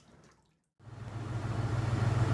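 Near silence, then about a second in a steady low hum with a hiss of running water fades in and holds: the truck's engine idling to circulate hot coolant through the shower heat exchanger, with water running from the hoses into a bucket.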